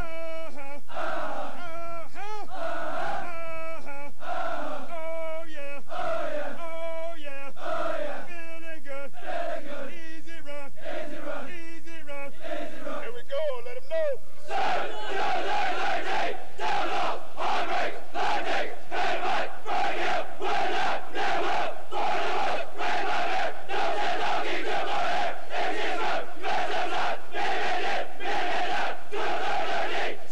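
A platoon of Marine recruits chanting together in rhythm, with a sing-song phrase repeating about once a second. About fourteen seconds in it gives way to louder, rougher massed shouting with a steady beat of about one and a half strokes a second.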